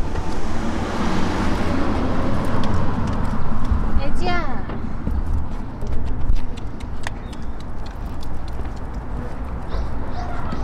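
Outdoor street ambience: road traffic and a low rumble of wind and handling on the microphone, with people's voices. A short pitched call glides up and down about four seconds in.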